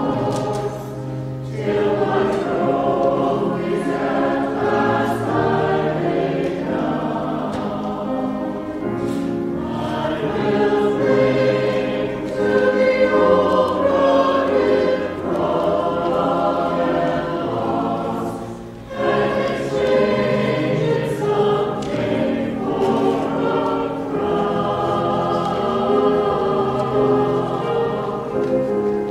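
Mixed church choir of men and women singing an anthem in sustained chords, with brief breaks about a second and a half in and again a little after halfway.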